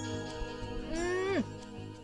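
Film background score with steady held notes. About a second in, a person lets out one drawn-out wordless vocal sound that drops sharply in pitch at the end.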